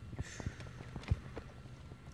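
A handful of irregular dull knocks and taps as a hand works at a mud-fouled dirt bike's side panel and airbox, the loudest knock a little past a second in.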